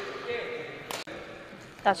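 Low, faint voices with one short, sharp knock just under a second in.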